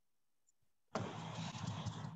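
Rustling, scraping handling noise as a number puzzle board is moved close to the microphone, starting about a second in and lasting about a second and a half.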